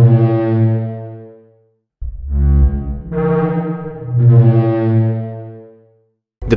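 Sandia National Laboratories' computer recreation of a Parasaurolophus call, modelled on air passing through the passages of its crest: a low, drawn-out tone with many overtones. One call fades out in the first second and a half. After a short gap the calls begin again, and a louder one about four seconds in fades out near the end.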